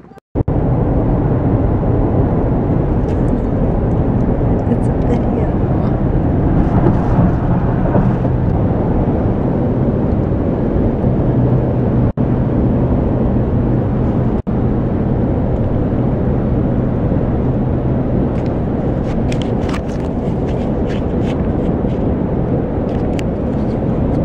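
Steady road and engine noise inside a moving car's cabin at highway speed: a loud, even low rumble with a faint hum under it, cutting out briefly twice.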